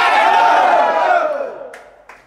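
A football team's players shouting together in a huddle, a rallying cry of many voices at once. It dies away over the last half-second or so.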